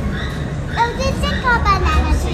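Children's voices in a busy public hall: a child's high voice sliding quickly up and down about halfway through, with no clear words, over a steady low hum.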